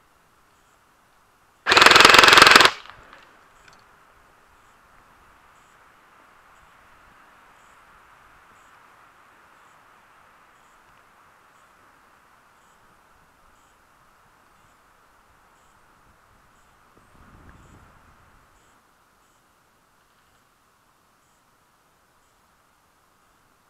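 An airsoft gun firing one rapid burst of about a second, loud and close to the camera.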